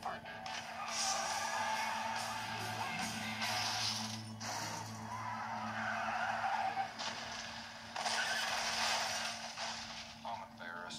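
Movie trailer soundtrack of car engines and tyres skidding over music, heard through a small portable DVD player's speaker. The car sounds come in three long stretches with short breaks between them.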